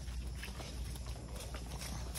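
A horse walking on grass, its hooves making soft, irregular steps, over a low steady rumble.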